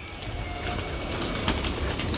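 A flock of domestic pigeons flapping as they come down to land close by: a dense, growing clatter of many wingbeats, with one sharp crack about one and a half seconds in.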